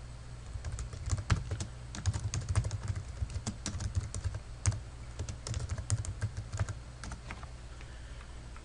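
Typing on a computer keyboard: a fast, irregular run of key clicks that thins out near the end, over a low steady hum.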